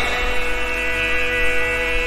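A steady held chord of several sustained pitches from the bhajan's accompanying keyboard instrument, with a low mains hum underneath.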